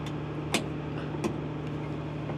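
Steady low machine hum, with two short metallic clicks, one about half a second in and one about a second and a quarter in, as a hand works fittings inside the engine's C-duct area.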